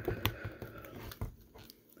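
Handling of a plastic action figure as its head is pressed back onto the neck peg: faint rubbing with a couple of small clicks, one about a quarter second in and another past the middle.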